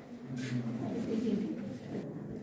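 Indistinct murmur of people's voices, with a short low cooing-like tone about half a second in.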